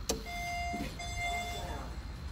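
A push-button click, then an elevator hall lantern sounding two steady electronic beeps of the same pitch, each under a second long. Two beeps is the usual signal that the arriving car is going down.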